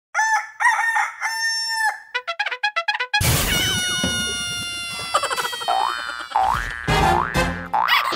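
Cartoon-style intro sound effects: a few short squawking calls and a quick run of short clucking notes, then a sudden loud hit about three seconds in with a long falling whistle, followed by three rising sliding tones.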